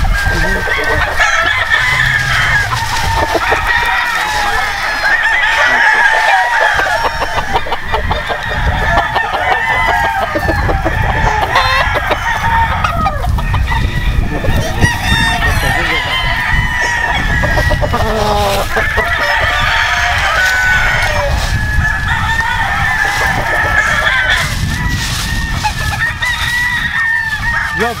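Many game roosters crowing over one another, with hens clucking, in a dense, continuous chorus of overlapping calls.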